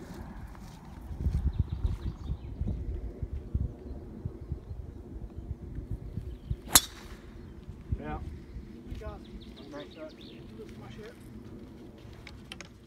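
Golf driver striking a teed ball: one sharp crack about seven seconds in, over a low rumble.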